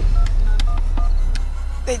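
Touch-tone phone keypad beeps: four short two-pitch tones within about a second as a number is dialed, over a steady low rumble.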